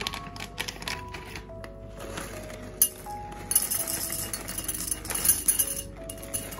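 Dry star-shaped wheat cereal poured from a bag into a ceramic bowl, a dense rattle of many small pieces hitting the bowl that starts about three and a half seconds in, after a few scattered clicks. Background music plays throughout.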